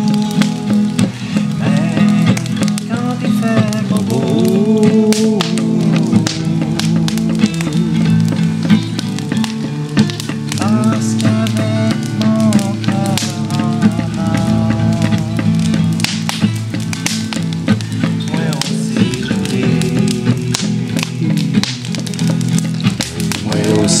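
Acoustic guitar strummed steadily, accompanying a voice singing a melody.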